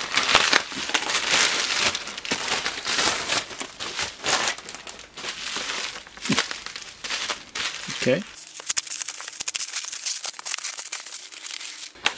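Plastic mailing bag and bubble wrap crinkling and rustling as a parcel is unwrapped by hand, in a fast run of irregular crackles.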